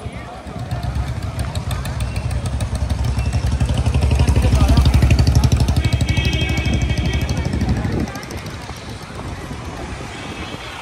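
A motorbike engine running close by on a busy street, its low pulsing rumble growing louder to a peak around the middle and dropping away abruptly about eight seconds in, over the chatter of passers-by.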